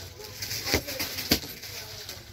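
Plastic-wrapped suit packets crinkling and knocking as they are handled and laid out, with a few sharp crackles about three-quarters of a second and a second and a third in.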